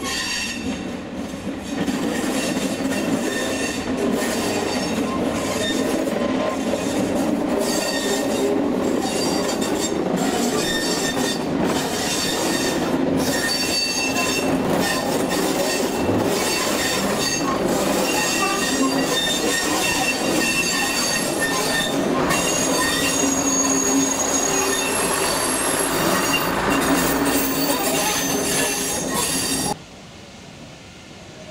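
Green first-generation diesel multiple unit running along the track, a steady rumble of wheels on rail with shifting high-pitched wheel squeal over it.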